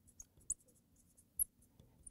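Felt-tip marker writing on a glass lightboard, faint, with a few brief high squeaks of the tip on the glass.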